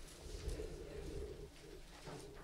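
A faint, low cooing bird call lasting about a second, heard during a pause in speech.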